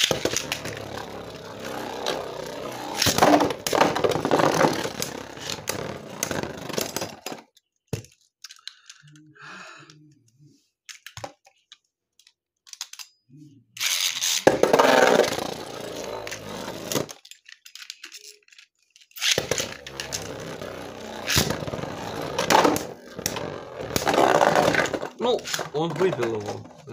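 Beyblade spinning tops whirring and clattering against each other and the walls of a plastic stadium, in three bouts of rattling and sharp clacks separated by quieter pauses.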